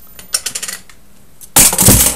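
Small clicks and rattles of a camera being handled, then about one and a half seconds in a loud, short clatter and thud as the recording camera is knocked over.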